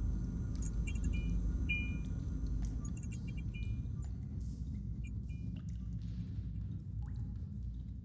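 Sound-design ambience: a steady low drone, with short high electronic beeps about every 0.8 s during the first few seconds that then stop, leaving the drone alone.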